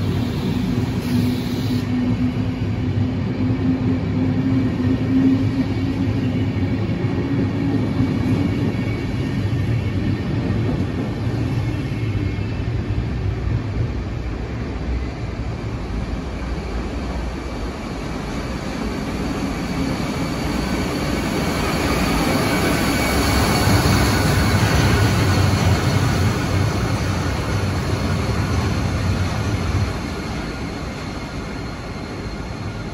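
SBB passenger train of Einheitswagen IV coaches rolling out of the station: a steady low rumble of wheels and running gear, with a hum that rises slightly in pitch over the first several seconds and then fades. About two-thirds of the way in, the sound swells again with a higher whine as a red SBB Re 4/4 II electric locomotive approaches.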